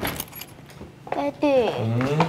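A few faint clicks, then from about a second in a person's voice calling out in a long, drawn-out note whose pitch slides down and back up.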